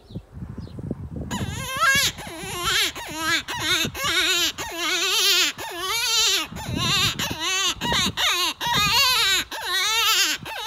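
Coyote Creek Pinoy Piper CQ predator hand call, mouth-blown in a rapid series of short, wailing cries with a quavering, wavering pitch, starting about a second in.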